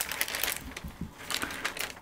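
Translucent paper pattern pieces rustling and crackling as they are handled, lifted and laid over one another on a cutting mat, in short irregular crinkles.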